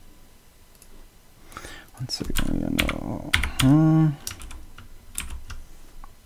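Computer keyboard keys clicking as an eight-digit confirmation code is typed in a quick run of keystrokes. About halfway through, a person gives a brief hummed 'mm', the loudest sound here.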